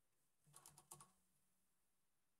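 Faint computer keyboard keystrokes: a quick run of about five taps about half a second in, then quiet.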